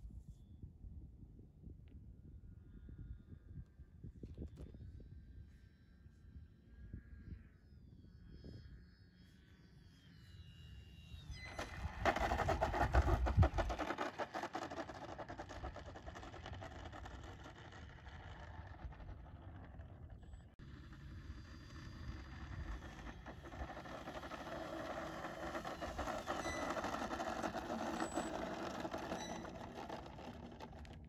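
Motor and propeller of a foam-board radio-control plane: a faint whine that wavers in pitch early on, loudest about twelve seconds in as the plane comes in close, then running steadily as it rolls along the runway. Wind buffets the microphone, heaviest around the loud stretch.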